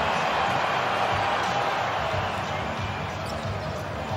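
Basketball game court sound: a steady arena crowd hum with a basketball bouncing on the hardwood floor.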